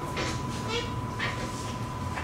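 Chalk on a blackboard: a few short, squeaky, scratchy strokes about half a second apart. A steady thin high tone runs underneath.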